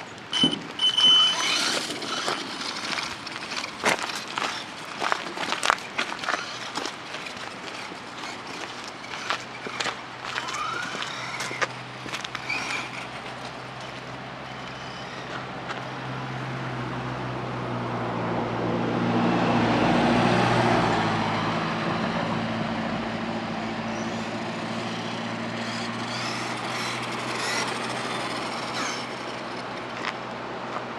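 Traxxas 1/16 Summit VXL RC truck running over gravel, with its tyres and chassis crunching and clicking and short rising whines from its electric motor. Midway a passing road car swells, loudest about twenty seconds in, then eases off to a steady hum.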